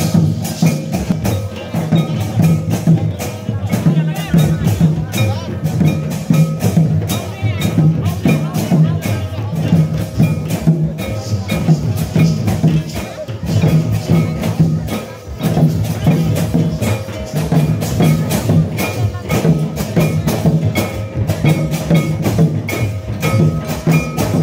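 Santali folk dance music with a steady repeating drum beat and dense clicking percussion.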